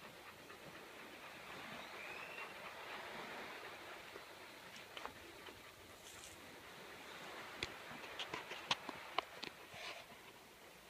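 Quick, sharp clicks and knocks over a steady background hiss in the last couple of seconds: a Great Dane's claws and feet on the hard deck of a small boat as she shifts and turns.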